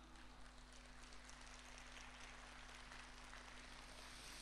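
Near silence, with a faint steady low hum and hiss.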